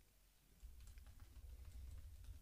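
Faint clicks of a computer keyboard and mouse: a few light, scattered taps in the second half. A low hum comes in about half a second in.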